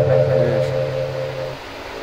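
A man's voice holding one long steady note at the end of a chanted line of a devotional manqabat. The note fades out about three-quarters of the way through, leaving only a quiet microphone hiss.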